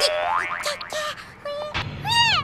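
Cartoon "boing" sound effect: a soft bump at the start, then a quick rising spring-like glide, over background music.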